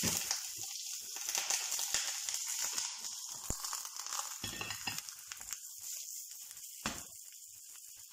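Hot oil sizzling and crackling in a frying pan as a flipped corn bread is laid back in on its uncooked side; the sizzle fades gradually.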